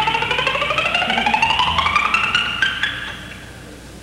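Country band's instrumental fill between sung lines: a fast run of rapidly repeated notes sliding steadily upward in pitch over about three seconds, over a low held bass note, then dying away.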